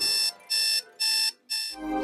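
Electronic alarm clock beeping: three short, high beeps about two a second, stopping about a second and a half in.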